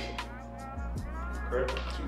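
Background music track with a steady beat.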